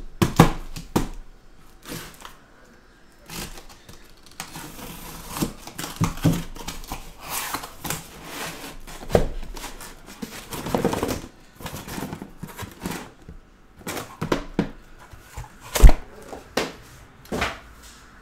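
A corrugated cardboard case being opened and handled, with irregular scrapes, rustles and knocks as the flaps are worked and the shrink-wrapped boxes inside are moved, and one sharp knock near the end.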